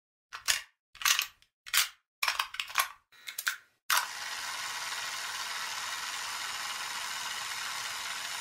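Mechanical clacks from the piano-key transport buttons of a vintage cassette recorder, five or six in the first four seconds, then a key pressed down with a clack just before the midpoint, followed by steady tape hiss as the cassette plays.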